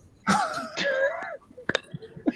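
A person laughing: one drawn-out, breathy, wavering laugh lasting about a second, followed by a short click near the end.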